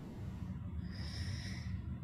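A person drawing an audible breath, lasting about a second, over a constant low background rumble.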